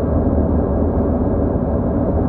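Steady low rumble of road and engine noise heard inside the cabin of a 2001 Audi A4 B6 with a 2.0 petrol four-cylinder engine, cruising at highway speed.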